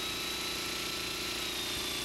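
Steady low hiss and hum, with a faint thin high whine running through it: the background noise of an old videotape sound track.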